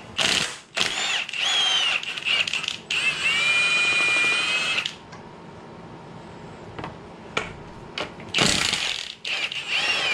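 Cordless electric ratchet running in spurts as it unscrews a bolt, its motor whining with a wavering pitch. The longest run is about a second to five seconds in, then a quieter stretch with a few clicks, then more short runs near the end.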